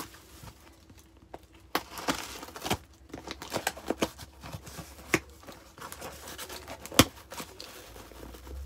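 Packaging of a small box being opened by hand: quiet at first, then a run of crinkling, crackling and tearing from about two seconds in, with one sharp snap about seven seconds in.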